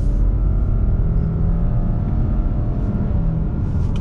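2020 Subaru Outback's 2.5-litre flat-four engine accelerating under throttle, heard from inside the cabin over low road rumble. The engine drone rises slightly, then holds nearly steady.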